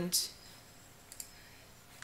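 A faint computer mouse click a little past halfway, over quiet room tone, as the on-screen replay is stepped forward; a spoken word trails off at the very start.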